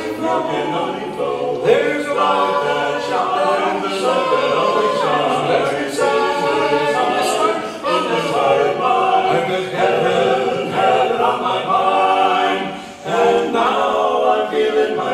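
Male barbershop quartet singing a gospel melody a cappella in close four-part harmony, with a brief break for breath near the end.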